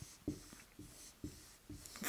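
Dry-erase marker drawn across a whiteboard in a series of short, faint strokes, about two a second, as an area is hatched in with parallel lines.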